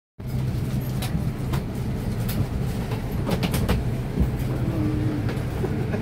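Airliner cabin ambience on a parked plane: a steady low hum, with scattered sharp clicks and knocks from passengers moving about in the aisle.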